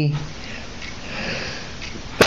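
A voice trails off at the start, then steady hiss with a soft breath drawn in through the nose, a sniff, swelling about a second in.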